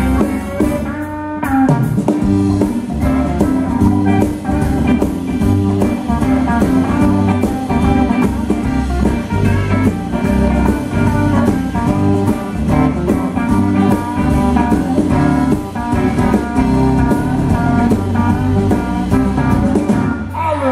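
Live blues-rock band playing an instrumental passage: two Telecaster-style electric guitars over a steady drum-kit beat, with no singing.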